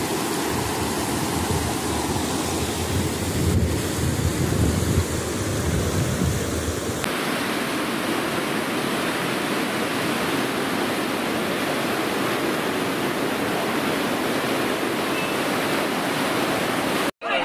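Steady rushing noise of the flooded Morna river's water. A low rumble of wind on the microphone is mixed in for a few seconds, and the sound changes abruptly about seven seconds in.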